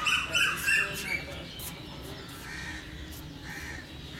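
Birds calling: a quick run of short, high calls in the first second, then a few fainter calls.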